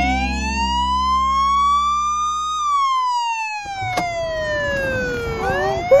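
Police car siren wailing: one slow rise in pitch, then a slow fall, starting to rise again near the end. The last low held notes of music fade out in the first half.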